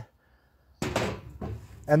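A sudden clunk of axes being handled on a table, about a second in, followed by about a second of shuffling handling noise as the tools are moved.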